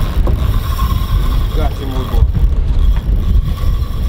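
Wind rumbling on the microphone aboard an offshore fishing boat, over a steady engine hum.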